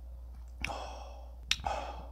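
A person letting out two loud breaths through the mouth while eating, like sighs. A sharp click about a second and a half in falls between them.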